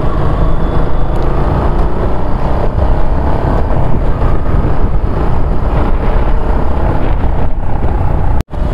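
Suzuki Gixxer motorcycle cruising at about 46 km/h: steady engine running under a loud, even rush of wind and road noise on the rider's camera microphone.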